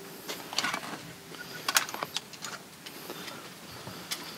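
Lever handle and latch of a metal door being worked and the door pulled open: a scattered series of sharp metallic clicks and knocks, the loudest a little under two seconds in.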